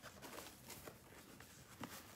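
Near silence, with a few faint soft ticks and rustles from hands handling the wrapping paper in a box.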